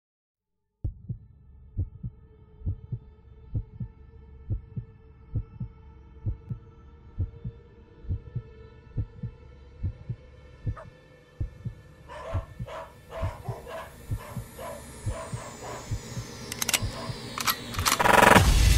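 Intro of an electronic dance track: a heartbeat-like double bass thump repeating a little faster than once a second under a faint synth drone. From about twelve seconds in, denser hits and high tones rising in pitch join in, building toward a drop.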